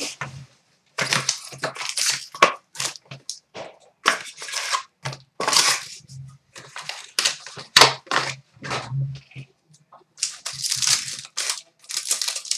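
A sealed hockey trading-card box being torn open by hand and its packs pulled out: irregular rips, crinkles and rustles of cardboard and wrapping, with short pauses about a second in and near ten seconds.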